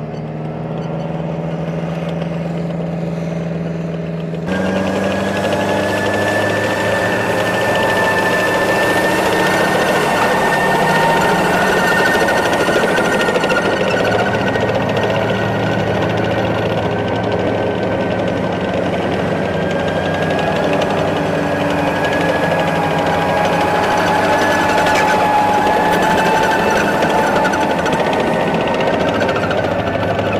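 Tracked armoured vehicle driving over dirt: a steady engine drone with a high, steady whine from the running gear, jumping louder about four seconds in.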